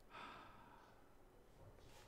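A faint sigh from a man, a short breath out lasting about half a second just after the start, then near silence.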